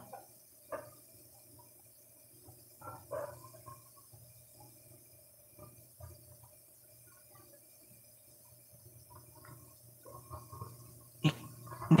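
Quiet room tone with a faint steady hum, broken by a few soft scattered clicks and brief faint murmurs.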